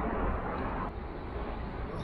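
Steady wind and road noise of a bicycle being ridden through a road tunnel: a low rumble of wind on the microphone with a hiss over it that fades about a second in.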